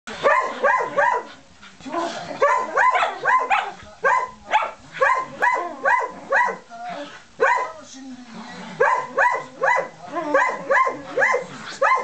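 Dogs barking in rapid runs of short, sharp barks, about three a second with brief pauses between runs, during rough play over a toy.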